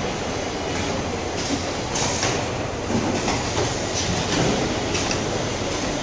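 Automatic two-head servo liquid filling machine running: a steady conveyor rumble with a few short hisses of air from its pneumatic cylinders.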